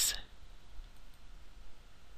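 Faint computer mouse clicks.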